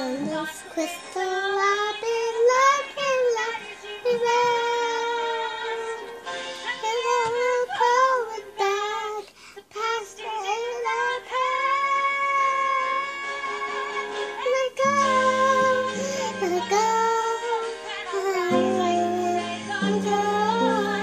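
A young girl singing a high, wavering melody without clear words. Low held piano notes sound under her voice from about fifteen seconds in.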